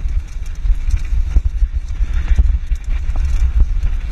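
Downhill bike ride on a rough dirt trail: a heavy low rumble of wind buffeting the microphone, broken by irregular sharp knocks and rattles from the bike over bumps.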